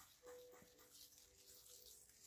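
Near silence: fingers faintly rubbing through dry sand on a plate, with a faint thin whine held under it from about a quarter second in.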